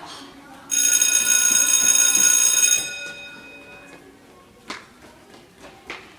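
Electric bell ringing loudly for about two seconds, starting suddenly and cutting off, with its ring lingering a moment after. Two sharp knocks follow near the end.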